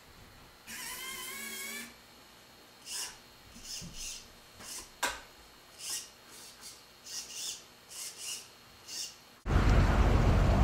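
Small electric gear motors of a tracked inspection robot's arm and camera pan-tilt whining. One longer wavering whine comes about a second in, followed by a string of brief high buzzes and a single click near the middle. Near the end a loud steady noise cuts in suddenly.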